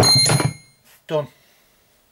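A single sharp metallic clang that rings for about half a second, from a hammer and steel punch used to drive the old handle wood out of an axe eye. A short spoken word follows about a second later.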